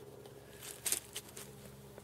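A scrap of synthetic chainsaw-protective trouser fabric held to a lighter flame and handled: a few faint, short crackles and rustles about a second in, over a steady low hum.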